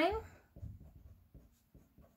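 Felt-tip pen writing on paper: faint, short scratching strokes.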